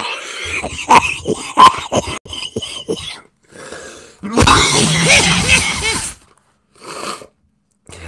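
A man coughing hard in a prolonged fit: a run of sharp coughs, then a long, loud, rasping cough about halfway through, and one last short cough near the end.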